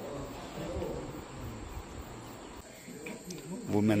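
Insects chirring steadily at a high pitch, with faint voices murmuring beneath; close speech begins near the end.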